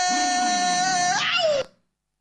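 A long, high-pitched held cry, steady in pitch, that bends up and down at the end and then cuts off abruptly into dead silence.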